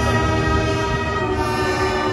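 Brass marching band holding one long sustained chord, several notes sounding together steadily.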